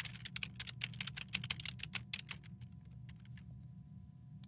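Typing on a computer keyboard: a fast run of keystrokes for about two and a half seconds, then a few scattered ones, over a steady low hum.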